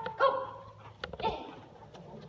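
Dog barking twice, about a second apart.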